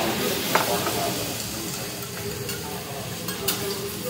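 Food sizzling on a hibachi flat-top griddle, a steady hiss with a few sharp clicks over it.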